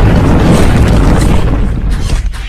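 Loud film sound effect of a spaceship crash-landing: a dense, rumbling crash and explosion with heavy bass, the noise of debris flying.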